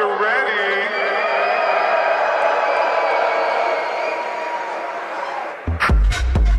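A techno track in a breakdown, with no drums. A voice-like sound wavers in pitch at first, then a held synth chord sustains. The kick drum and beat drop back in shortly before the end.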